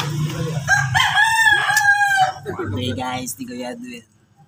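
A rooster crowing once: a single long call of about a second and a half, starting about a second in.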